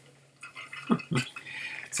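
A man taking a drink and swallowing, with two short gulps close together about a second in.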